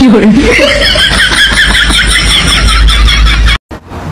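A man laughing loudly with his mouth open, a long run of quick, even "ha-ha-ha" pulses, about five a second, that cuts off abruptly near the end.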